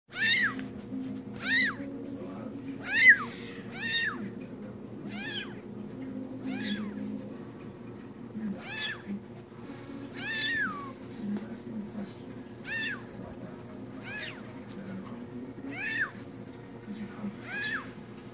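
Young kitten mewing over and over, about a dozen short high-pitched mews, each rising and then falling in pitch, spaced roughly a second apart.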